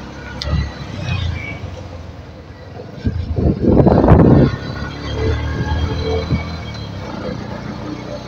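Road vehicle engine running while driving, heard from on board, with a louder rushing swell about three to four and a half seconds in.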